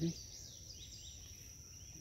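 Steady high-pitched insect chorus in woodland, with a few faint chirping bird calls in the first second or so.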